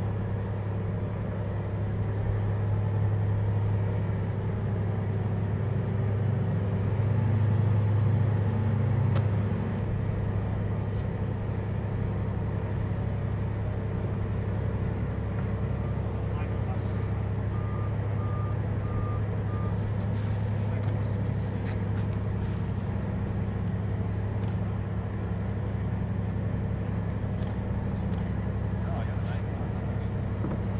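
Steady low drone of diesel engines, swelling a little about a quarter of the way in. A short run of faint beeps sounds a little past halfway.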